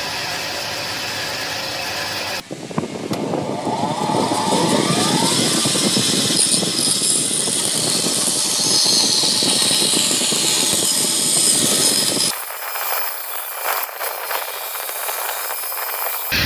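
Bandsaw running and cutting curves through thick wooden blanks, a steady loud noise of the blade in the wood. The sound changes abruptly about two and a half seconds in and again near twelve seconds, the middle stretch the loudest.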